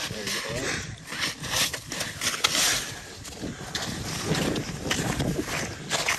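Wind noise on the microphone over the open ice, with scattered clicks and scuffs of handling and faint voices.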